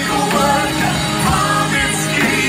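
Live worship band playing, with a singer's voice carried over electric keyboard and a steady beat, amplified through the room's PA.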